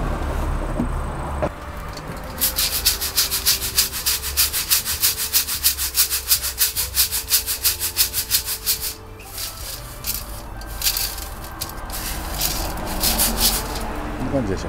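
Mountain sand (yamasuna) rattling in a stainless-steel sieve as it is shaken back and forth, sifting the fine dust out of the grit. The shaking is rhythmic, about five shakes a second for several seconds, then a few slower, uneven shakes near the end.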